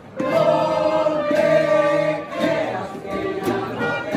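A group of people singing together in long held notes, coming in just after the start and carrying on.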